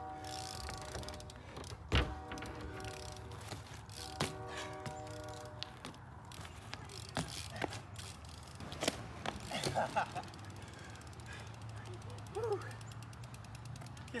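A BMX bike worked hard on asphalt during trick attempts. A steady buzzing tone comes in three short spells, and one loud sharp knock about two seconds in is the bike coming down. Scattered clicks and knocks follow as the bike is spun and lands.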